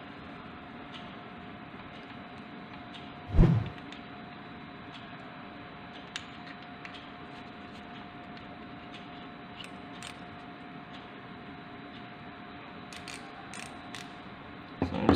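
Quiet handling of a micrometer and a metal disc on a wooden table: one dull knock about three and a half seconds in, then scattered faint small clicks, a few more near the end, over a steady background hiss with a faint whine.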